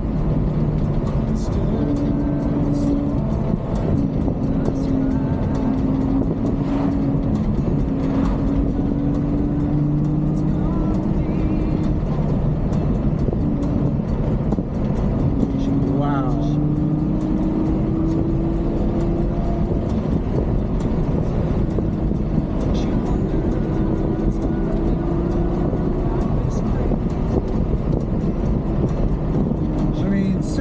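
Ferrari GTC4Lusso's V12 engine heard from inside the cabin while cruising, a steady engine note that climbs gradually in pitch in places, over road and tyre noise.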